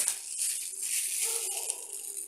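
Thin plastic bag crinkling as it is handled and gathered closed, loudest at the start and thinning out.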